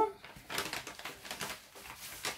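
Paper crinkling and rustling from a padded mail envelope being handled and opened, a run of irregular small crackles and clicks.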